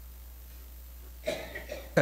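A man coughs once, short and sharp, about a second in, after a quiet pause in his speech.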